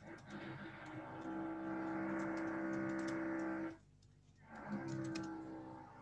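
A steady held tone of unchanging pitch sounds for about three and a half seconds, stops, then returns about a second later and fades out. Light clicks like keyboard typing run through it.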